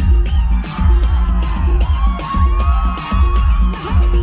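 Loud live pop music through a concert PA with a heavy bass beat, heard from among the audience, with crowd whoops and yells over it.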